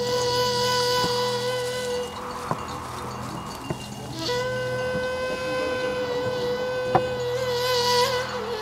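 Background film score: a long steady high note held over a low drone. The note drops out for about two seconds in the middle, then returns. A few faint clicks sound under it.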